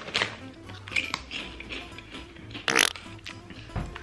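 Potato chips being eaten from a foil chip bag, giving a few short crackles and crunches, the loudest about three quarters of the way through, over background music.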